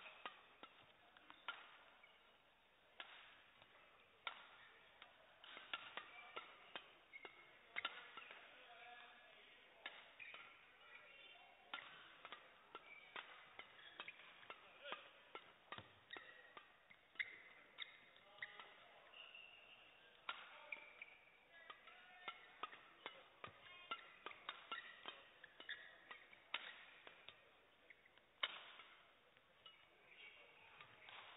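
Badminton rackets striking shuttlecocks during a doubles warm-up: faint, sharp hits at an uneven pace, often less than a second apart. Short squeaks of court shoes on the floor come between the hits.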